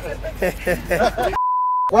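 A censor bleep: one steady high-pitched beep about half a second long, with all other sound cut out beneath it, coming right after laughing speech.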